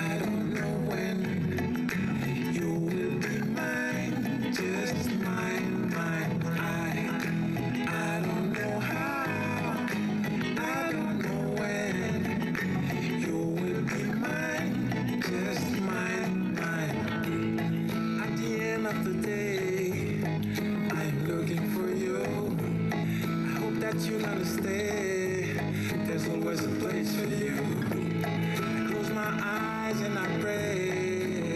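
A reggae-style song with singing and guitar playing continuously from a Bose Wave Music System IV's CD player.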